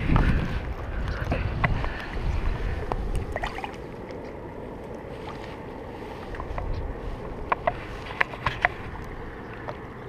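Water sloshing and light splashing as a large walleye is held in the shallows and let go. Wind rumbles on the microphone for the first few seconds, the loudest part, and a few sharp ticks come about three-quarters of the way through.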